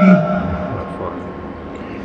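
A man's amplified Quran recitation ends a phrase right at the start, the voice trailing off. It gives way to a pause filled with a low, steady background rumble.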